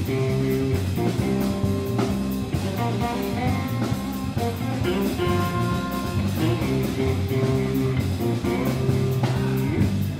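Live jazz-blues instrumental on electric guitar and drum kit, with the guitar holding long notes over steady cymbal strokes.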